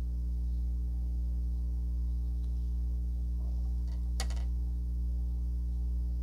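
A steady low hum runs through, with a single sharp click about four seconds in.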